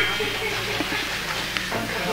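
Faint background murmur of voices and room noise in a large meeting hall, with a small click a little past one second in.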